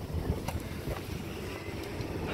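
Low rumble of wind and handling noise on a phone microphone, with a few faint knocks and rustles as a child climbs into a car's back seat.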